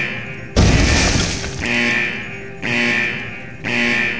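A produced sound-effect track of crashes repeating about once a second, each crash followed by ringing tones that fade before the next.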